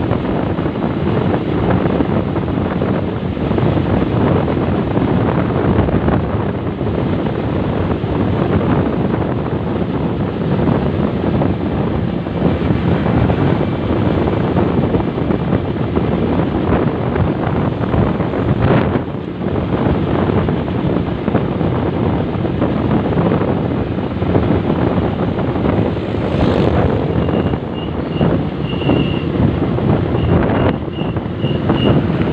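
Motorcycle ride at road speed: steady wind rush over the microphone mixed with the engine running. A faint high repeated tone comes in near the end.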